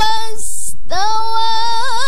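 A young woman reciting the Qur'an in the melodic tilawah style into a microphone. A long held note breaks off a little under half a second in and is followed by a brief hiss. A new held note starts about a second in, with quick ornamental wavers near the end.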